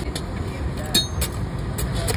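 A few short, sharp metal clinks of a steel spatula against the pan of noodles, over a steady low rumble.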